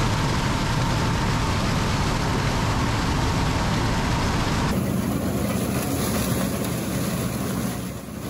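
Combine harvester running through a corn field, heard close to its corn head as the stalk stompers flatten the stalks: a steady, loud machine noise with a low rumble. The sound changes abruptly about five seconds in.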